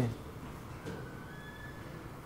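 A pause in amateur-recorded speech: low steady room noise through the microphone, with a faint thin whistle-like tone that rises slightly from about halfway in.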